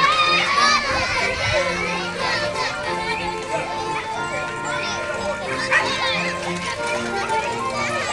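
A crowd of schoolchildren chattering and calling out, with background music of held notes underneath.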